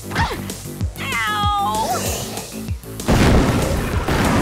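Action-cartoon background music with a steady beat. About a second in comes a high-pitched cry from a cartoon character. Near the end, a loud crash of something smashing into a glass wall breaks over the music.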